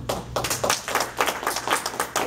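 A small group of people clapping, with the separate, irregular claps of a few pairs of hands, at the close of a sermon.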